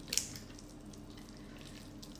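A utensil stirring a thick cream-cheese mixture in a glass bowl: soft, wet stirring sounds with one short click against the bowl about a fifth of a second in, over a faint steady hum.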